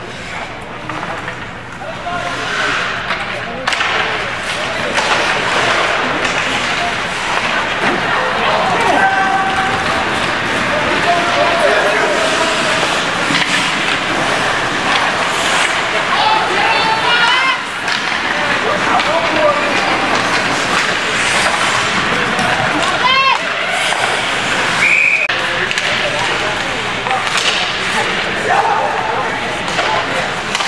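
Ice hockey play in an indoor rink: steady noise of skating and play on the ice, with scattered shouts from players and onlookers and a brief high call about 25 seconds in.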